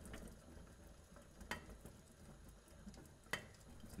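Very faint bubbling of a lidded stock pot simmering, with a few light ticks, the clearest about a second and a half in and near the end.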